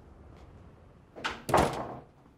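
A front door pushed shut with a loud thud about one and a half seconds in, followed by a short ring-out.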